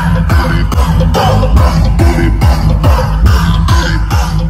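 Loud dance music with a fast, steady bass-drum beat, each drum stroke falling in pitch.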